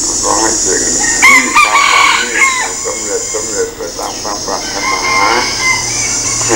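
A rooster crowing once, about a second in, in a single call lasting just over a second that drops in pitch at its end.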